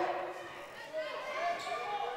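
A basketball bouncing on a hardwood gym court during live play, over the low hubbub of a reverberant gymnasium.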